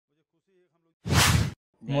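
A single short whoosh, a news-edit transition sound effect, about a second in after a brief quiet gap.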